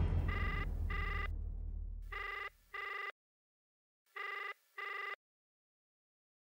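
A mobile phone's ringback tone heard over its speakerphone while the call is still unanswered: three double rings, about two seconds apart. A low drone fades out under the first two rings.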